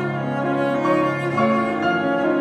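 Cello playing long bowed notes with piano accompaniment, the cello moving up to a higher note about one and a half seconds in.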